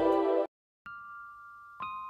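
Background music that stops abruptly about half a second in. After a moment of silence, soft bell-like chime notes are struck twice, once about a second in and again near the end, each ringing out and fading.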